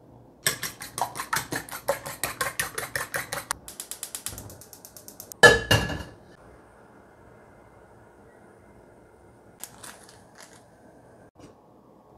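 Eggs being beaten with a spoon in a stainless-steel bowl: a quick run of metal clinks, about seven strokes a second, for some three seconds, then softer. A little after five seconds a loud ringing metal clang as the steel wok is set on the gas stove, followed by a faint steady hiss of the lit burner.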